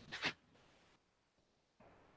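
Near silence: quiet room tone, with a short, faint rustle right at the start.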